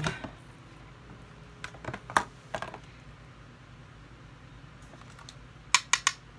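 Light clicks and taps of a makeup brush and a tin eyeshadow palette being handled, a few scattered ones about two seconds in and two sharp clicks near the end.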